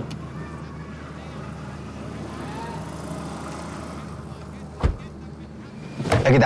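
A car engine idling steadily, with a click at the start and one heavy thud, like a car door shutting, about five seconds in.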